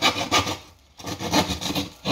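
A hand blade rasping through gyprock plasterboard in short repeated strokes, with a brief pause a little after half a second in.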